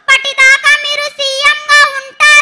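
A young girl singing into a handheld microphone through a PA, in short phrases of held, steady notes.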